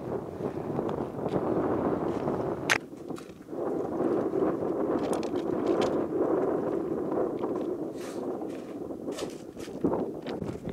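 Wind blowing across the microphone in gusts, with one sharp click shortly before three seconds in.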